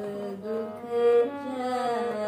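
A woman chanting a verse of Sikh Gurbani prayer in a sung, melodic recitation, holding long notes that glide from one pitch to the next.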